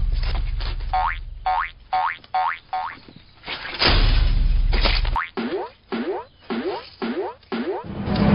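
Cartoon sound effects for hopping magic brooms. A whoosh is followed by five quick, high, springy boings, then a second whoosh. After that come six lower rising boings at about two a second.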